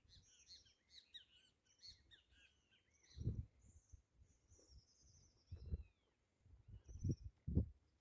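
Faint birdsong: many quick chirping notes in the first couple of seconds, then scattered higher whistles and a few arching calls. Four brief low rumbles, the loudest sounds, come from about three seconds in.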